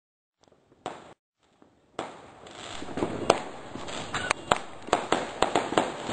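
Fireworks going off: one sharp bang just under a second in, then from about two seconds a continuous crackle with many sharp bangs and pops, the loudest around three seconds in and a quick run of pops near the end.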